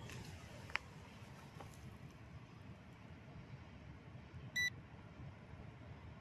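Faint hiss with a light click just under a second in, then about four and a half seconds in a single short, high electronic beep: the signal that the drone's horizontal compass calibration is complete.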